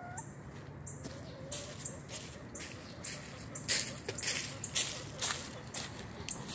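A hen clucks briefly at the start. Then come crunching footsteps through dry leaf litter, about two steps a second, growing louder toward the middle.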